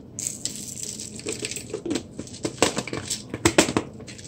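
Coarse pink salt crystals rattling and sliding against the inside of a glass jar as it is tilted and turned, a dense, irregular run of small sharp clicks.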